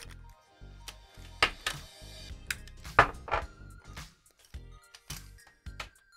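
Background music, with a few sharp clicks and knocks as the camera's white plastic mount and cable gland are handled, the loudest about one and a half and three seconds in.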